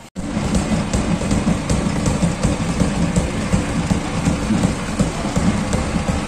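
A Mahindra Novo 605 DI tractor's diesel engine running close by, loud and steady, with procession music mixed in.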